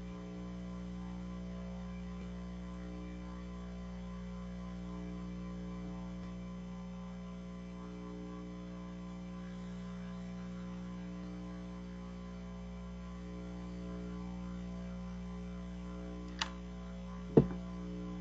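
Steady electrical hum of an open microphone on a sound system, with two brief knocks near the end, the second louder, as the podium microphone is handled just before speaking.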